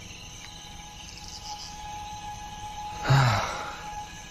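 Soft night ambience of the film's soundtrack: faint sustained music tones with chirping crickets. About three seconds in, a short voiced sigh, falling in pitch.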